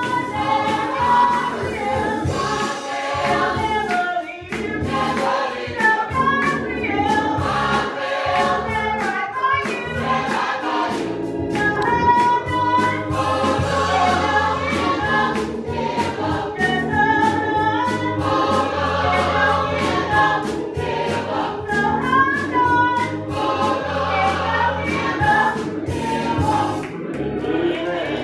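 Gospel church choir singing a song with instrumental accompaniment: sustained bass notes under the voices and a steady beat.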